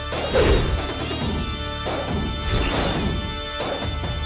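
Dramatic TV-serial background score: sustained tones with loud crashing hits, the loudest about half a second in and another about two and a half seconds in.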